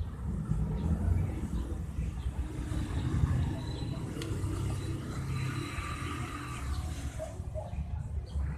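Hyundai Starex turbodiesel engine running with a steady low rumble and a faint hiss of air at the turbocharger. The owner blames the low power and weak boost on a turbo whose inner bearing is worn and leaking oil.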